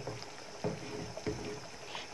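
Wooden spatula stirring a thick, simmering egg curry in a pan: faint sloshing, with a couple of soft strokes.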